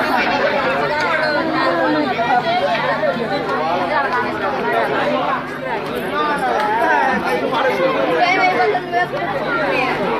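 Many people talking at once: a crowd's chatter of overlapping voices, with no single speaker standing out.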